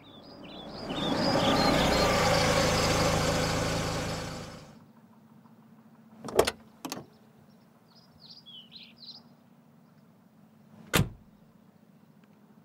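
A loud rushing noise swells up and cuts off abruptly about five seconds in. Then come a Maruti Suzuki Wagon R's car doors slamming shut, two slams about half a second apart and a third near the end, with birds chirping faintly in between.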